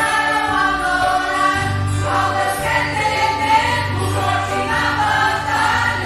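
Small mixed church choir of women, men and children singing a hymn together in held, sustained notes. A low bass comes in about a second and a half in and continues under the voices.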